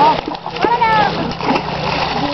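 Water splashing as fish leap out of the shallows against a fishing net, with people's voices calling out over it.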